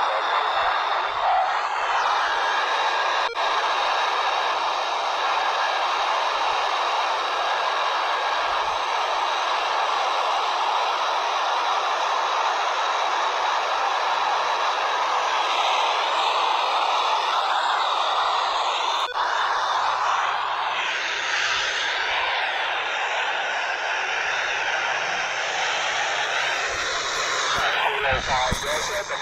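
FM static hissing steadily from the speaker of a Kenwood TH-D72A handheld transceiver, its squelch open on the SO-50 satellite downlink. In the second half, faint wavering signals come and go through the hiss as the weak downlink is chased with the whip antenna.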